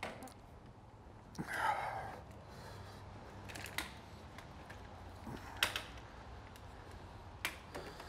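Handling clicks and knocks of a brake pedal depressor tool being wedged between the steering wheel and the brake pedal: a few scattered sharp clicks, the sharpest about five and a half seconds in.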